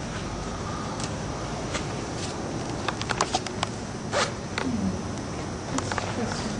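Haircutting scissors snipping through hair: scattered sharp snips, with a quick run of several in the middle, over a steady background hiss.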